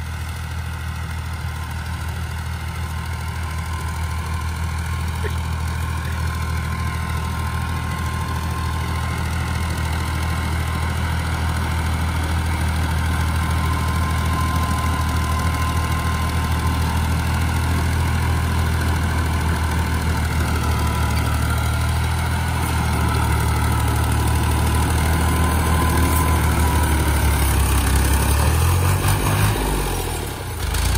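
Farm tractor's diesel engine running steadily under load while it pulls a rotavator that tills the soil, with a steady whine above the engine. It grows louder as the tractor draws near.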